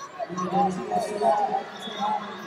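Several short squeaks of wrestling shoes gripping and sliding on the rubber mat, with voices in the background.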